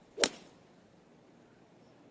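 A golf ball struck off the tee: one sharp crack of the clubhead hitting the ball about a quarter second in, fading quickly.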